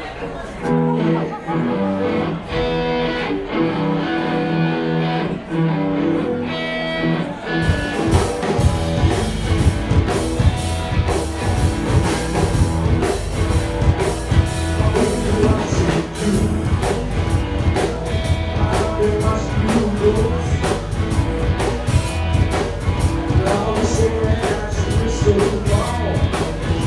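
Live rock and roll band of electric guitar, upright bass and drum kit: a sparse intro of plucked notes, then the drums and full band come in about eight seconds in and play on at a steady beat.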